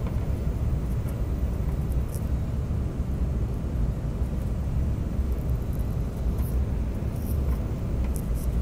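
Steady low rumble of an airliner cabin during the descent to land, from the engines and the air rushing past the fuselage.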